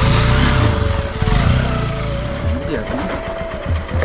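Motorcycle engine working hard as the bike is ridden up over a rough, broken ledge. The low engine sound is strongest for about the first second and a half, then eases off. Voices are heard over it.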